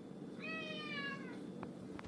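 A domestic cat meowing once, a single call of about a second that falls slightly in pitch.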